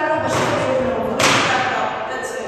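A woman speaking into a podium microphone, with a sudden thud-like burst of noise just over a second in that fades within about half a second.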